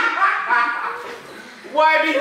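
People's voices talking and exclaiming, with a brief lull past the middle before the voices pick up again near the end.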